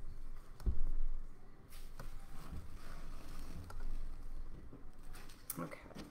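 Handling noise from a large drawing board being shifted and propped up: a low bump under a second in, a couple more knocks, and a short run of scrapes and clicks near the end.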